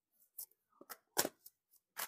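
A tarot deck being shuffled overhand: a handful of faint, short card clicks and snaps, the loudest a little past the middle.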